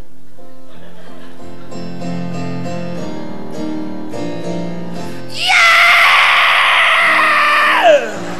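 Keyboard playing slow, soft lullaby chords; about five seconds in, a loud heavy-metal-style scream breaks in over it, held for over two seconds before its pitch drops away near the end.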